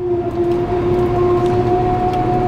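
Claas Jaguar forage harvester running under load, heard inside the cab: a steady whine in two pitches over a low mechanical rumble.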